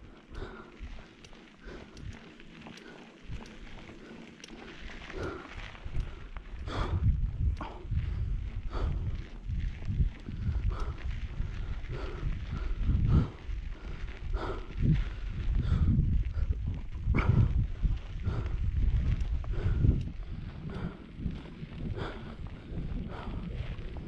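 Mountain bike descending a loose dirt road: tyres rolling over dirt and gravel, with frequent clicks and knocks from the bike rattling over bumps. A low rumble grows louder after about five seconds.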